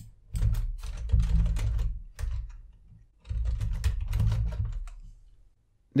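Computer keyboard typing in two quick bursts of keystrokes, the second starting about three seconds in, as a terminal command is entered.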